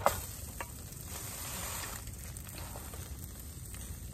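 Bread and shredded cabbage frying in a metal camp pan on a portable gas stove: a sharp clatter right at the start as the toast is flipped with a spatula, then steady sizzling.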